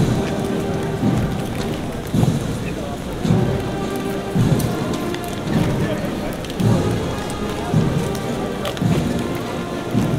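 A band playing a slow march, its bass drum beating evenly about once a second under held notes, over a steady noisy background.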